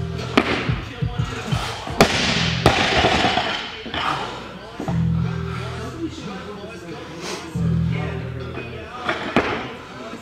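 A barbell loaded with rubber bumper plates dropped onto the lifting platform with a sharp thud about two seconds in, followed by lighter knocks of weights. Background music with a heavy bass line plays throughout.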